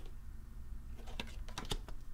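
Tarot cards being handled on a table: a quick run of light clicks and taps about a second in, over a faint steady hum.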